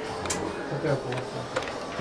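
Office room noise: faint background talk over a low steady hum, with a few sharp clicks scattered through.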